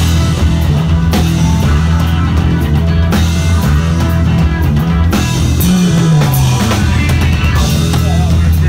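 Live punk rock band playing loud and steady with no vocals: a prominent electric bass line, with a drum kit keeping time and accent strikes about every two seconds.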